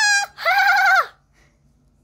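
A child's high-pitched, wavering voice: a short call, then a longer one lasting just under a second, made without words.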